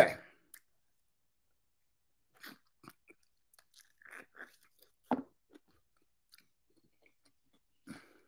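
Quiet, sparse wet mouth sounds of someone biting and chewing a lemon wedge taken with fresh honey, with one louder bite a little after five seconds in.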